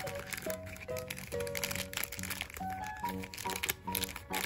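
A thin clear plastic packet of powder mix crinkling as fingers squeeze and handle it, over background music with a simple melody.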